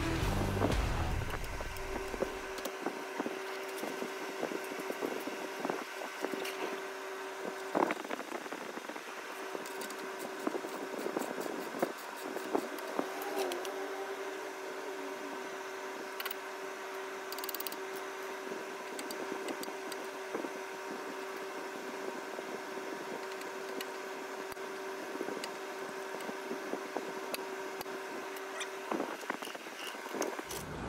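Scattered light metallic clicks and taps of hand tools working the tie rod end nut and cotter pin on a car's rear suspension knuckle, over a steady hum.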